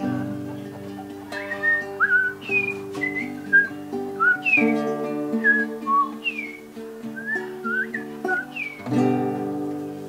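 Nylon-string classical guitar playing held chords, with short bird-like whistled phrases over it, about two quick rising and falling glides a second, which stop shortly before the end.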